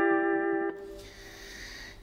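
Electric guitar with a clean tone, sustaining a three-note pentatonic chord shape (frets 10, 8, 9) struck just before. About two-thirds of a second in, the chord is damped off, leaving one faint note ringing on.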